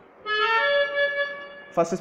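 Electronic keyboard playing two held notes, the second higher than the first and sustained for about a second, starting a quarter second in. A single spoken word follows near the end.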